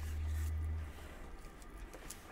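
Faint room tone: a low steady hum that cuts off about a second in, leaving a quiet hiss.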